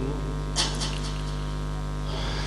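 Steady low electrical hum from an amplified sound system in a pause between phrases of a sermon, with a brief cluster of three or four short hissy noises about half a second in.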